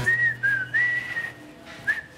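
A person whistling a short tune: a few high notes sliding up and down, trailing off about halfway through, with one more short note near the end.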